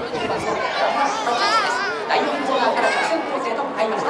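Overlapping voices of a racecourse crowd, several people chattering and calling out at once.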